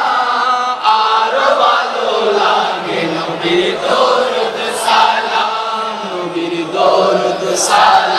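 A Bengali Islamic naat sung by several male voices together in chorus, with a chant-like melody.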